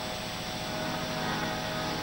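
A faint, steady drone of sustained harmonium notes under a low hiss.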